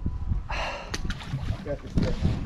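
A short, breathy exhale close to the microphone, about half a second in, followed by a couple of small clicks over a low rumble.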